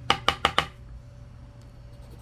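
About four quick light knocks within half a second, from a scratch-off lottery ticket and a chip-shaped scratcher coin being handled on a tabletop. Then only a faint steady hum.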